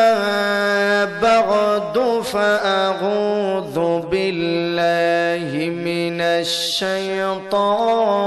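A man chanting in long, held notes with a wavering pitch, phrase after phrase with short breaks between them, in the melodic style of a waz preacher's recitation into a microphone.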